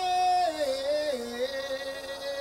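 A man singing long held notes into a microphone, the pitch stepping down about half a second in and again about a second in, then holding steady.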